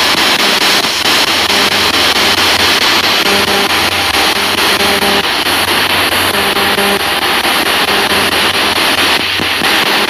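A spirit box sweeping the FM band, played loud through a small JBL portable speaker. It gives a continuous hiss of radio static, chopped by rapid station changes, with brief snatches of broadcast sound.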